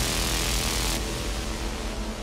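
Melodic house and techno breakdown with the kick drum gone: a white-noise sweep hisses over a held low bass and pad, thinning in the highs about a second in as the level slowly falls.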